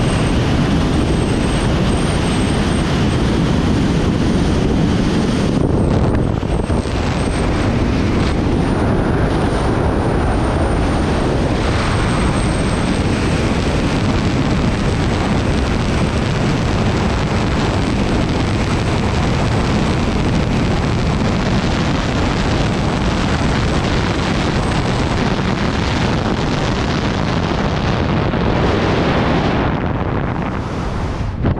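Loud, steady rush of wind over a helmet-mounted camera during high-speed wingsuit flight, with a faint thin high whistle that fades out near the end.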